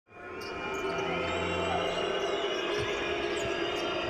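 Basketball being dribbled on a hardwood court, with a few low thuds of the bounces in the second half, over the steady noise of an arena crowd.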